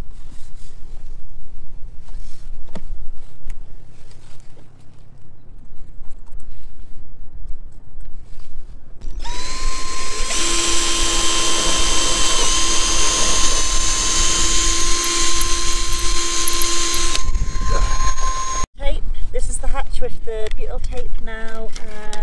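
Cordless drill spinning up and then running steadily for about eight seconds, boring a hole through the mounting hole of a new hatch frame into a sailboat's fibreglass coach roof. Before it there is a low rumble of wind on the microphone and a few light clicks.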